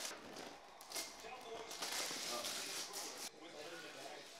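Tissue paper and gift packaging rustling and crinkling as a gift box is unpacked. The rustling is irregular and heaviest in the second half.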